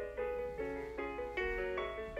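Piano accompaniment for a ballet barre exercise, a quick succession of notes changing several times a second.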